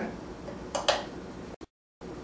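Two quick, light clicks close together, from small lab items being handled, over a steady low hum; the sound cuts out completely for a moment near the end.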